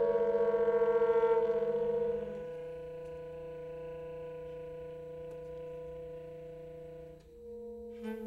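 Saxophone quartet holding long sustained notes together in a slow, drawn-out chord, with a fast waver where close pitches beat against each other. About two and a half seconds in it drops to a quieter held chord, thins out briefly near seven seconds, and a new held chord begins near the end.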